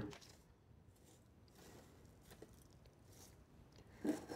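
Near silence, with faint soft crunching from potting soil and clay pebbles being pressed into a terracotta pot by hand, mostly in the middle and later part.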